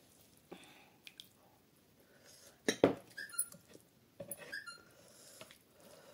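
Wet squelching and clicking of a bare hand mixing dal into rice on a plate, loudest about halfway through, followed by a couple of short high squeaks.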